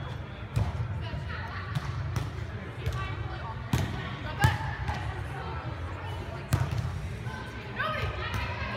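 A beach volleyball being struck by hands and forearms during a rally on an indoor sand court: four sharp slaps, about half a second in, twice close together around four seconds (the second the loudest), and once more past six and a half seconds.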